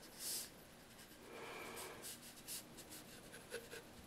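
Faint paintbrush strokes on watercolour paper: a brief, louder swish just after the start, then several short, scratchy strokes.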